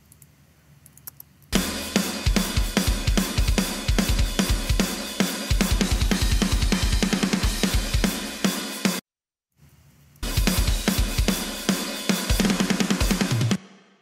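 Playback of a mixed metal drum-kit recording: rapid kick-drum strokes, snare hits and a constant wash of cymbals and hi-hat, with the overheads' channel-strip EQ switched off. It starts about a second and a half in, cuts off abruptly near nine seconds, resumes a second later and stops again just before the end.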